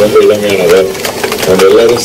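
A man speaking into a microphone, his voice carried over a public-address system.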